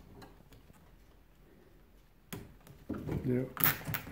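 Gloved hands fastening a nylon cable tie around insulated refrigerant pipe: a few faint clicks, then near the end a short sharp rasp as the tie is zipped tight.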